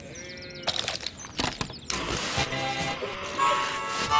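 A sheep bleats over birdsong, then a handheld portable radio is switched on: a few clicks, a hiss of static from about two seconds in, and music starting to play from it near the end.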